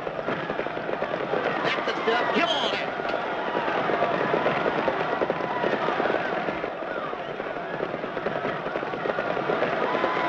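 Trotting horses' hooves clattering rapidly on a dirt track as harness-racing sulkies go by, with crowd shouting mixed in.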